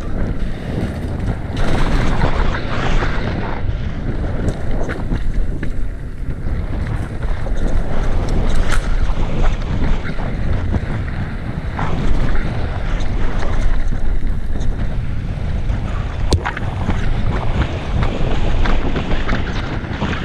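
Wind buffeting the microphone of a camera on a mountain bike riding downhill on a dirt forest trail, a steady low rumble of air and tyres on the ground. Scattered sharp knocks and rattles from the bike over bumps.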